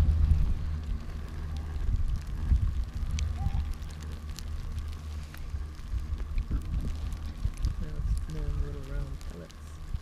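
Low rumble of wind on the microphone while riding a moving chairlift, with scattered light knocks and clicks.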